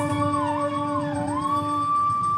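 Carnatic dance accompaniment: a flute melody gliding with ornamental downward slides, then settling into a long held note, over a steady drone.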